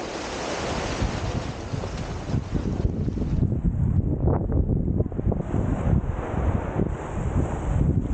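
Small waves washing up onto a sand and pebble shoreline, the hiss of the wash swelling and then fading after about three seconds, with wind buffeting the microphone in a low rumble.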